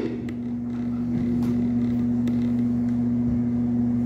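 Steady electrical hum from an amplified sound system, a constant low drone with a few faint clicks.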